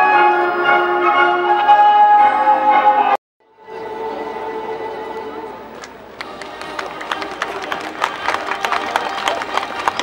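Bells ringing, a cluster of sustained tones at several pitches, cut off suddenly about three seconds in. After a brief silence a fainter ringing tone returns, and from about six seconds in it gives way to many quick sharp claps or clicks with music.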